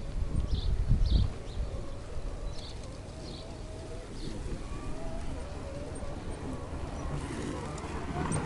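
Handling bumps in the first second or so, then outdoor garden ambience with short high bird chirps repeating every half second to a second.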